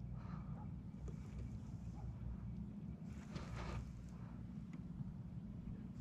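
Faint steady low hum of a bass boat's electric trolling motor, with no distinct events.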